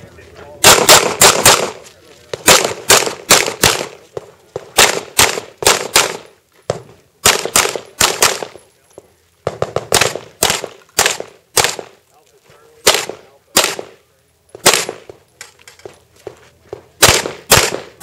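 Semi-automatic pistol firing rapid strings of shots, in quick pairs and bursts of up to about six, with pauses of about a second between strings.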